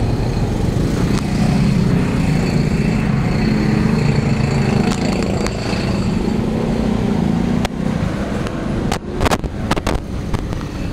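A motor vehicle engine running steadily with a low hum, which stops abruptly about eight seconds in. A few sharp knocks follow near the end.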